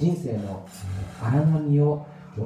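A man's voice speaking into a microphone, ending on a drawn-out syllable.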